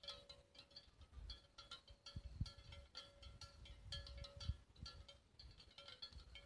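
Faint, irregular clanking of several cowbells on grazing cattle, each bell ringing at its own fixed pitch, with a few low thumps about two seconds in and again after four.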